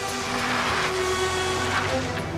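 A car speeding off, a rush of engine and tyre noise rising over dramatic background music with held notes, and fading near the end.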